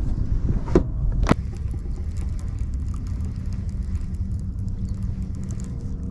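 Baitcasting reel cranking in a square-bill crankbait, faint fine ticking over a low steady rumble. Two sharp clicks come about a second in.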